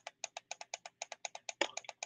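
Faint, rapid, perfectly even ticking, about eight clicks a second, from an unseen small mechanism in the room, with a brief vocal sound from the seated man shortly before the end.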